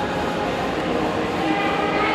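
Track bike with a rear disc wheel rolling at speed on the wooden boards of a velodrome, a steady rolling rumble as the rider passes close by.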